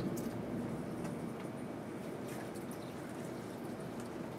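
Wash solution squirted from a plastic squeeze bottle into a strip of small plastic test wells: a faint liquid squirting over a steady background hiss, with a few light clicks.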